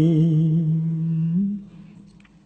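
A Khmer Buddhist monk's voice chanting smot, the sung Buddhist verse, holding one long low note with a slight waver. The note lifts in pitch and trails off about one and a half seconds in.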